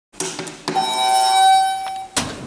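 A few light clicks, then a Schindler traction elevator's hall lantern sounding its arrival chime: one clear ding about three-quarters of a second in, held for over a second. It signals that the car has arrived going up.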